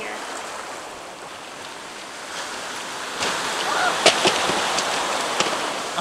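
Ocean surf washing on a rocky shore, a steady hiss that grows louder about three seconds in. A few sharp knocks and clatters sound over it near the end.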